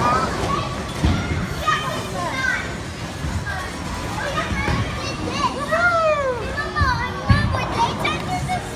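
Children's high-pitched shouts and squeals with chatter, in a bowling alley, with a couple of low thuds, about a second in and again near the end.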